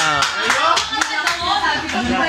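A run of hand claps, about four a second, over the players' excited voices.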